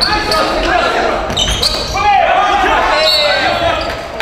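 Basketball bouncing on a hardwood gym court amid players' voices calling out, all echoing in a large hall.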